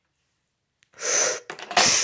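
Two short, breathy hissing bursts from a person's mouth, one about a second in and another near the end, each with a faint click just before it.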